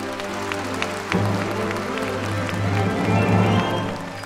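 Military concert band playing a song's instrumental introduction, with low brass chords swelling from about a second in and growing loudest near the end. A scatter of sharp clicks sounds over the band.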